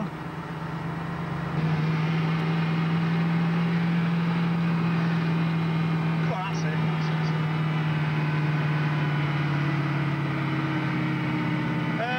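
Range Rover engine droning steadily, heard from inside the cabin while driving on snow, getting louder about a second and a half in.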